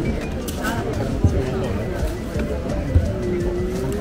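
Open-air market background: distant chatter and music over a steady low rumble, with a few soft knocks and one held note near the end.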